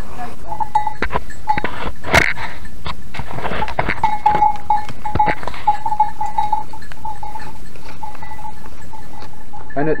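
Goats in a herd, with a repeated clear ringing note and sharp knocks and rubbing close to the microphone as a horned billy goat nuzzles it. The loudest knock comes about two seconds in.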